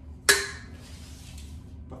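A single sharp metallic clink, steel sword meeting a round steel buckler, ringing briefly, followed by a faint hiss about half a second later.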